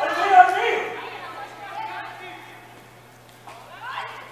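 Several voices shouting and chattering over one another, loudest about half a second in and dying away toward the end, over a steady low hum.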